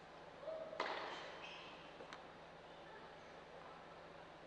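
A tennis ball thudding once on the indoor hard court, echoing in the hall, with a fainter tap about a second later.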